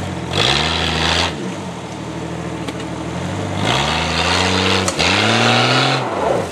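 Jeep Cherokee XJ engine revving hard three times under the load of towing a stuck vehicle out of mud. Each rev climbs in pitch, holds and falls away. The last two come close together, and a hiss rides over each one.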